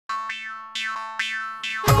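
Intro jingle: five short, sharp twanging notes, each falling in pitch, over a held chord. Near the end a full music track with a beat comes in.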